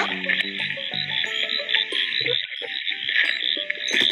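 A recorded chorus of frogs calling: a dense, fast-pulsing trill held steady throughout, with soft background music underneath.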